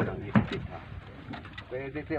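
Indistinct low men's voices talking, with one sharp knock about a third of a second in.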